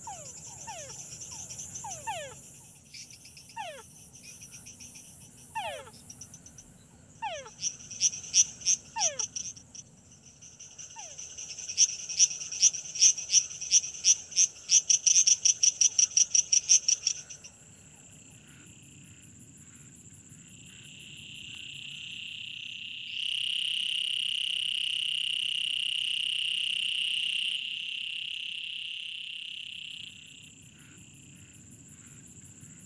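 A night chorus of male tree frogs calling, with insects trilling underneath. It opens with short falling whistled notes, then a loud pulsed call repeating about four times a second for several seconds, then a loud steady high trill that cuts off near the end.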